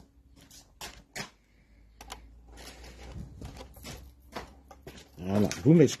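Footsteps and rustling handling noise of a phone being carried by a man walking: short irregular knocks about every half second to second. A man's voice starts near the end.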